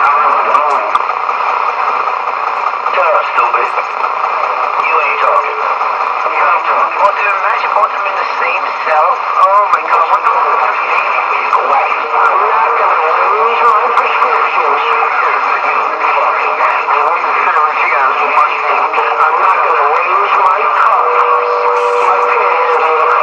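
Several voices talking over one another, thin and cut off at top and bottom like sound from a radio or small speaker, with no single voice clear enough to make out words.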